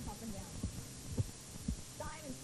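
Four dull low thumps about half a second apart over a steady low hum.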